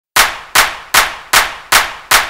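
Five sharp percussive hits at an even beat of about two and a half per second, each loud at the strike and fading before the next.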